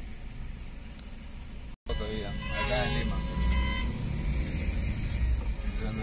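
Car engine and city traffic heard from inside a car creeping through heavy traffic: a steady low rumble that cuts out completely for an instant just before two seconds in, then comes back louder, with short higher-pitched sounds about a second later.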